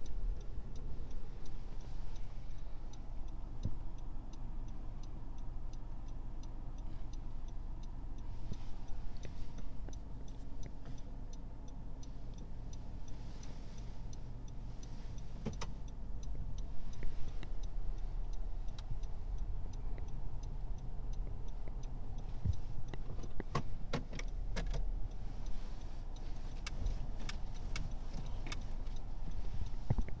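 Low engine and road rumble inside a Honda Civic moving slowly, with the turn-signal indicator ticking steadily for about the first half. A few sharp clicks come near the end.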